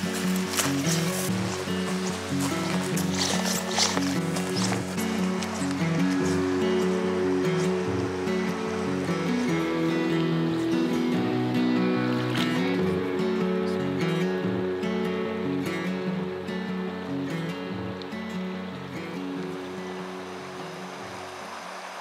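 Background music of steady held chords, with a few light clicks in its first seconds.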